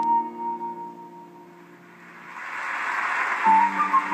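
Concert flute with piano accompaniment: a held flute note over sustained piano chords dies away in the first second or so. After a short lull, a rising wash of noise swells up, and the piano chords and flute come back in about three and a half seconds in.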